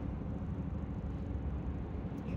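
Steady low rumble of car cabin noise, engine and road, heard from inside the car.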